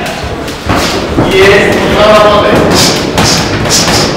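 Dull thuds from an amateur boxing bout in the ring, with men's voices shouting from ringside over them in a large hall.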